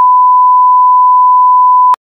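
Loud, steady 1 kHz test tone of the kind played with television colour bars, a single unwavering pitch that cuts off with a click just before the end.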